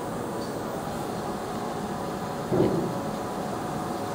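Steady machinery hum in a workshop, with a few faint steady tones running through it.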